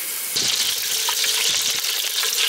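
Food sizzling in a hot cooking pot, a dense hiss that starts suddenly about a third of a second in.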